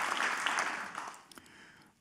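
Audience applause tapering off and dying away about a second and a half in.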